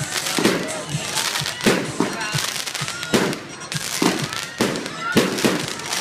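Aerial fireworks bursting overhead in a rapid series, a loud bang roughly every second.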